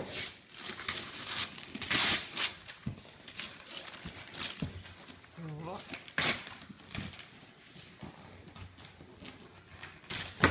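Wrapping paper being torn and crinkled off a large gift box in a series of short rips, the loudest about two seconds in.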